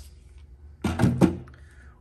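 A plastic cordless screw gun set down into a foam-lined metal tool chest drawer among other cordless tools: a short clatter with two quick knocks about a second in.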